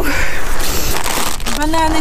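Plastic grocery packaging rustling and crinkling as bags of bananas and snacks are handled. A woman's voice starts near the end.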